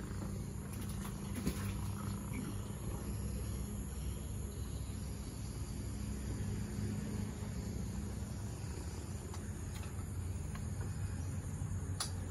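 Quiet outdoor ambience: a steady high-pitched insect drone over a low, even rumble, with a few faint clicks.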